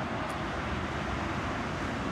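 Steady background noise of road traffic, an even rumble with no distinct events.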